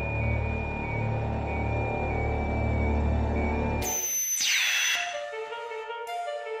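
Electronic instrumental music from synthesizers: a deep pulsing drone under a steady high held tone, which cuts off abruptly about four seconds in. A high whistling sweep then falls in pitch, and held synthesizer notes at a middle pitch begin near the end.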